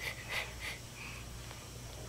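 A few short, faint puffs of breath blowing, about four in the first second or so, to blow a wisp of angora fibre off a nose.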